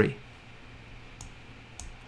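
Two faint computer mouse clicks, about half a second apart, over quiet room tone.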